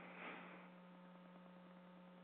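Near silence on the audio line, with a faint steady electrical hum.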